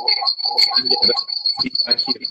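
Video-call audio feedback: a steady high-pitched whistle over speech, from a participant's device joined to the call twice and looping the audio back.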